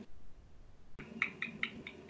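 A faint run of short, high chirps, about four or five a second, starting about halfway in.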